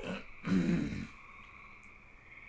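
A man clears his throat once, a short rough burst about half a second in.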